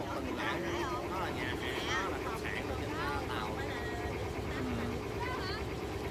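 Tour boat's engine running with a steady low drone, with passengers chattering over it.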